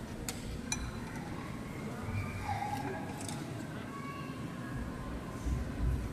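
Crowd murmuring and talking quietly inside a large church, with two sharp clinks in the first second.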